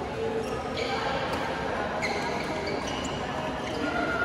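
The sounds of a busy badminton hall in play: sneakers squeak in short high chirps on the court mats and rackets strike shuttlecocks in sharp clicks. Players' voices carry through the hall's echo underneath.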